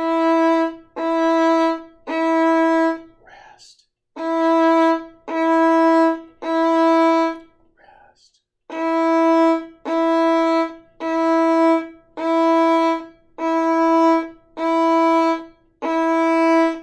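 Violin playing E, first finger on the D string, over and over in separate detached bow strokes, about one note a second. The notes come in groups with short rests between them.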